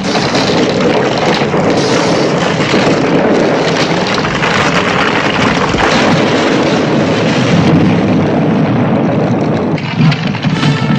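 Film sound effects of a rockslide: a continuous, loud rumble and crash of collapsing cliffs and falling rock.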